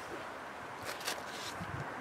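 Faint outdoor ambience: light wind on the microphone with a soft rustle about a second in.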